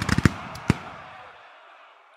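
Gunfire sound effect: a few last sharp shots in the first second, then a noisy echo that fades away.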